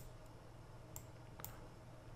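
Three faint computer mouse clicks, one right away, one about a second in and another half a second later, over a faint low hum: the clicks of placing points on a mask outline.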